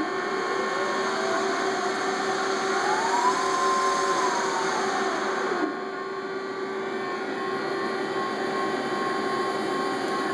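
Tsugami CNC machine running through its cycle, with a steady motor hum and tone. A whine rises in pitch over about three seconds and then falls away a little past halfway. At that point a hiss cuts out and the machine settles to a quieter steady run.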